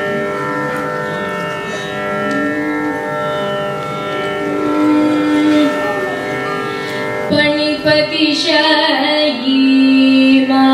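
Carnatic music in raga Jhankaradhwani: a female voice sings long held notes over a tampura drone, with violin accompaniment. About seven seconds in, the phrases turn busier and more ornamented, with quick wavering pitch slides.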